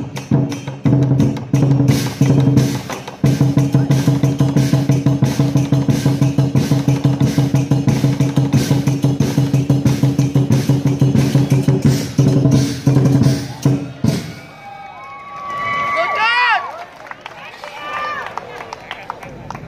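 Lion dance percussion band: the big lion drum beaten in a fast, dense roll with cymbals clashing along. It stops about fourteen seconds in, and voices follow.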